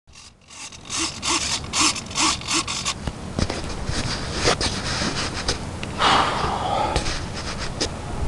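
Rhythmic rasping strokes, about two a second, for the first few seconds, then rustling, clicks and knocks from a handheld camera being swung around.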